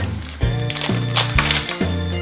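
A plastic candy wrapper crackling in a series of sharp crinkles as it is pulled and torn open by hand, over steady background music.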